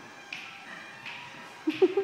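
Zyle, small brass finger chimes held in the dancers' hands, clicked three times in a steady beat about 0.7 s apart, each click ringing briefly, over music. Near the end a short, loud vocal cry cuts in.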